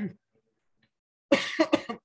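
A person coughing, several quick coughs in a row near the end.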